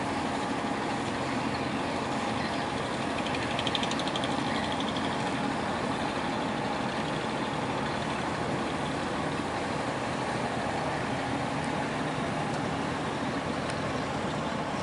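Boat engine running with a steady, unchanging drone.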